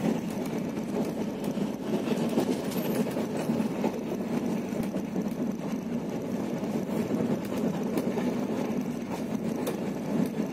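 Steady rumble of a passenger train running along the track, heard from inside the carriage, with a few faint clicks of the wheels on the rails.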